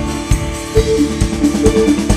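A live band playing an instrumental passage between sung lines: drum kit beats with short repeated melody notes over a steady bass.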